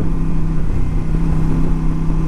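1982 Honda Silver Wing's V-twin engine running steadily under way, with wind and road noise on the microphone. It now runs smoothly: the rider thinks a clogged carburettor jet has cleared.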